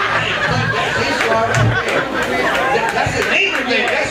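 Indistinct voices: a man talking into a microphone, with chatter of other voices mixed in.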